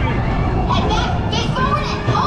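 Riders' voices, children among them, chattering and calling out over the steady low noise of the roller coaster train rolling along the track.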